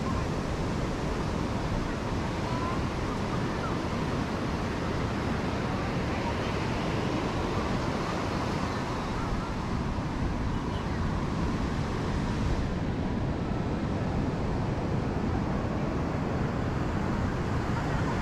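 Steady rush of ocean surf on a sandy beach, with wind buffeting the microphone.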